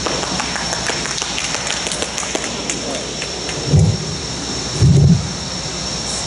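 Handling noise on a podium microphone as its cover is being changed: rustling and crackling, with two low thumps about four and five seconds in, over a steady background hiss.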